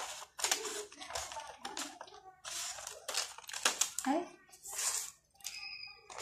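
Paper pattern sheet rustling and crackling as it is handled and flexed, in a string of short bursts.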